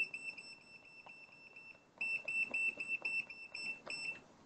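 Handheld graphical multimeter beeping at each button press: a rapid series of short, high beeps, about four or five a second, with a pause of about a second in the middle, as the voltage range and trigger level are stepped up to 100 V.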